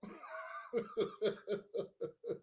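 A man laughing: a soft breathy start, then a run of short rhythmic 'ha' pulses, about four a second.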